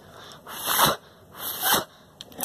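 Two short puffs of breath blown onto a Snap Circuits X1 microphone, about a second apart.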